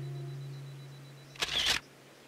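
A held low music note fades away, then about one and a half seconds in a camera shutter clicks once, a quick two-stroke snap.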